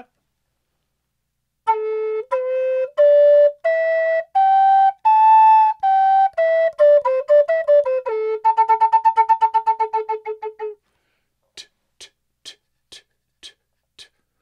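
Native American flute played in a scale up and back down, each note started separately with the tongue. It ends on one low note repeated rapidly, about ten times a second, by fast tonguing. A few faint short ticks follow near the end.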